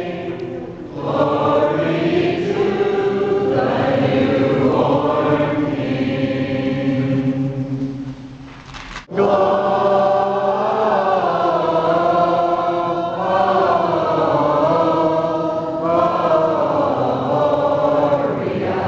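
A mixed group of men and women singing a hymn together in unison, unaccompanied. The singing fades and breaks off abruptly about halfway through, then resumes.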